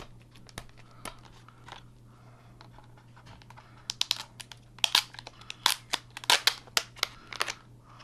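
Thin plastic security seal and wrap being peeled off a DVD case. First a few faint picking clicks, then from about halfway through a quick run of sharp crinkling and tearing rips.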